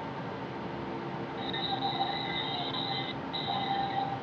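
An unidentified high-pitched steady whine from next door, over a faint steady hum. It sets in about a second and a half in, breaks off briefly near the three-second mark, then resumes.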